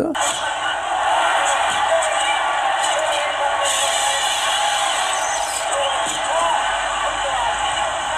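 Soundtrack of a boxing anime fight scene played back with a thin sound and no bass: a Japanese ringside commentator speaking over steady background noise and music.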